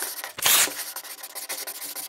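A scratchy, rubbing noise made of quick, irregular strokes, with one loud swish about half a second in. It is an added sound effect under the closing card.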